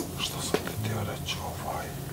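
Hushed whispering between people, with sharp clicks at the start and about half a second in.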